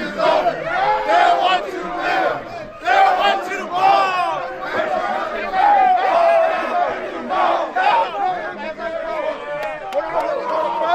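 A football team's players shouting and yelling over one another in a loud, continuous group hype-up.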